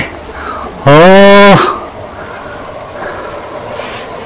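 A person's voice holding one loud, drawn-out vowel for under a second, starting about a second in. The rest is low room noise.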